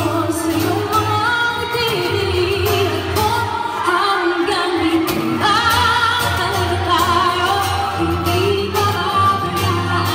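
A woman singing a pop song live into a microphone over amplified backing music with a steady low beat, her melody held in long notes that slide between pitches.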